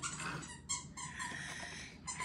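Faint rustling of clear plastic candy-apple domes being handled, with a light plastic click about two-thirds of a second in.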